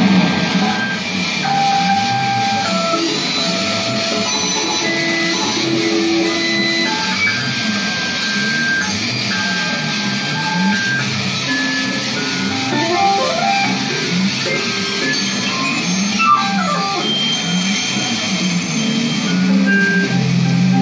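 Live duo of electric guitar and electronics playing experimental music: a low tone wobbling up and down, with scattered short held notes at higher pitches and a few quick rising glides in the second half.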